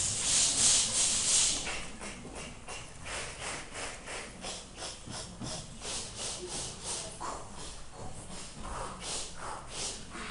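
A room full of children doing a breathing warm-up: a long loud hiss, then short rhythmic hissed pulses of breath, about two or three a second.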